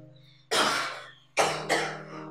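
A young man coughing hard: one harsh cough about half a second in, then two more in quick succession near the end, the persistent cough of a sick patient.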